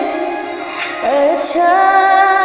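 A woman singing a slow Hindi song melody: a held note fades away, and about a second in her voice glides up into a new long note.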